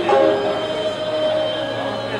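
Nanyin chamber music: a woman's voice slides up into a long held note, accompanied by the dongxiao vertical flute and erxian two-stringed fiddle, with plucked pipa and sanxian lutes.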